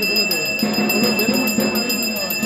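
Puja handbell rung continuously: a steady high ringing with rapid, even clapper strokes, over voices chanting.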